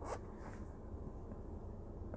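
A short rustling scrape just after the start, then a faint steady low hum.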